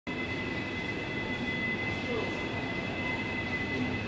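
Steady supermarket room noise: a broad hum with a steady high-pitched whine running through it.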